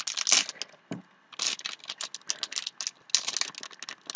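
Foil blind-bag wrapper crinkling and crackling in the hands as it is worked open, with a short pause about a second in.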